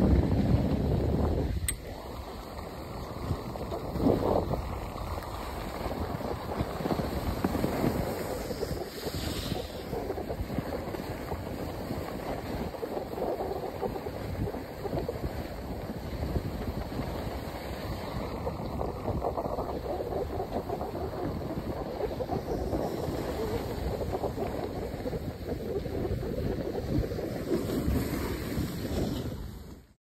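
Skis sliding over groomed snow with wind rushing across the microphone, a continuous noisy hiss that is loudest in the first couple of seconds and then holds steady.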